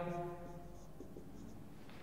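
Faint strokes of a marker pen writing on a whiteboard over quiet room tone.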